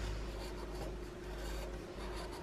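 Marker tip scratching and sliding over a sheet of paper on a table as an outline is drawn in short strokes, over a low steady hum.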